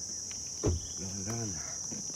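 Steady high-pitched drone of insects, with a short thump about two-thirds of a second in.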